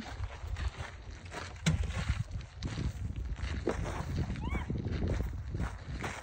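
Footsteps crunching on a gravel path over a low wind rumble on the microphone, with a short faint voice about two-thirds of the way through.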